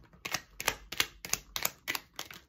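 A deck of tarot cards being shuffled by hand, the cards snapping against each other in a quick run of clicks, about five a second.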